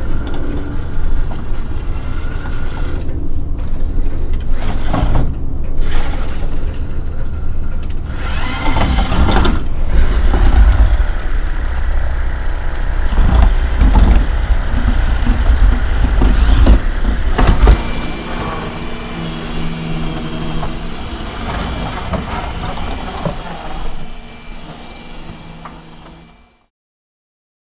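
Handheld percussive massage gun running, pressed against the neck and shoulder, giving a loud, heavy buzzing thud. About eighteen seconds in it drops to a quieter, steadier hum.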